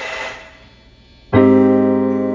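Electronic keyboard with a piano sound striking one chord about a second and a half in, held and slowly dying away, after a short quiet pause.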